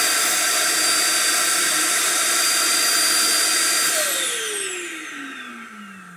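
Self-emptying base of an iRobot Roomba j7+ Combo running its suction motor to empty the robot's dust bin into the base's bag. It runs loudly and steadily, then from about four seconds in it spins down, its whine falling in pitch as it fades near the end.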